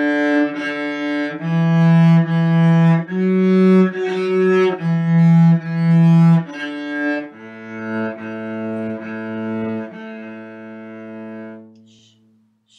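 Solo cello, bowed, playing a simple tune in separate bowed notes: D, D, E, E, F sharp, F sharp, E, E, D on the D string. Then it drops to a lower A, the first finger on the G string, repeated four times with the last note held until it stops just before the end.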